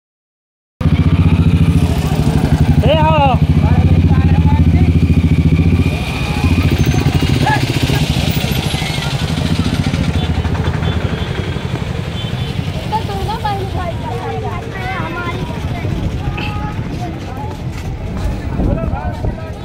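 A motor vehicle engine running close by, loud for about the first six seconds, then dropping to a lower street rumble with scattered voices of walking children.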